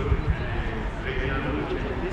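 Indistinct voices of people chatting close by, over a low rumble.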